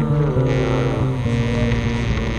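Experimental instrumental music on effected electric bass guitar: sustained low notes that change pitch every second or so, with sliding higher tones layered above.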